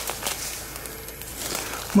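Footsteps on dry leaf litter, with a few light crackles.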